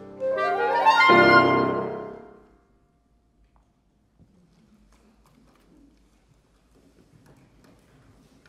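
Clarinet playing a quick rising run into a final chord with the piano about a second in. The closing chord rings and dies away within a couple of seconds, then only a faint rustle of the hall remains.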